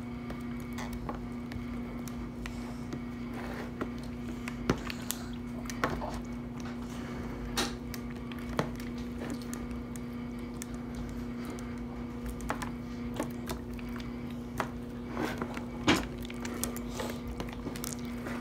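Slime being kneaded and squeezed by hand in a plastic bowl: irregular sticky clicks and small pops, a few sharper ones standing out, over a steady low hum.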